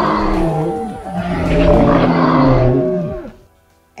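A lion roaring: two long, loud roars back to back, dying away near the end.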